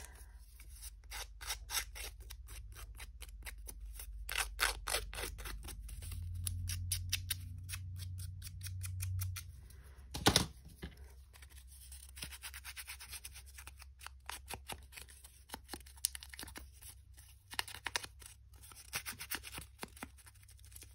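Scissors cutting paper in many quick snips, with one louder knock about ten seconds in.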